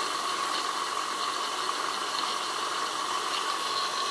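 Small 1930s steam turbine running on steam at about 55 psi: a steady hiss of steam with a constant high whine held at one pitch.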